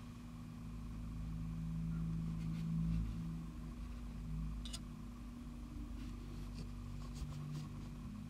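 A few faint, short clicks and light handling noises as a small plastic model engine held in a clamp is turned by hand, over a low steady hum.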